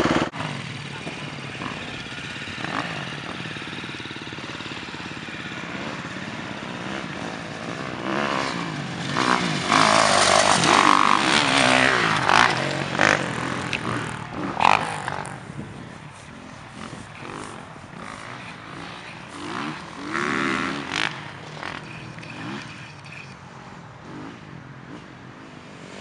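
Dirt bike engine running and revving on a motocross track, loudest as the bike comes close about eight to thirteen seconds in, then dropping back and fading.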